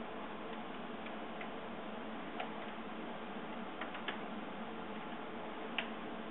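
Wall clock ticking faintly over a steady hiss, with a few sharper clicks in the middle and near the end.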